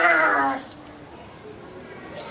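A young girl's voice calling out a single loud, high-pitched word whose pitch falls, lasting about half a second at the start, followed by quiet room tone.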